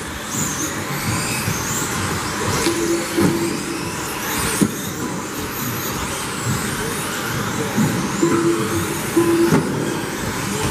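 Electric 1/10-scale RC buggies racing on carpet, their 17.5-turn brushless motors whining up and down in pitch as they speed up and brake, over constant tyre and chassis noise, with a sharp knock about halfway through.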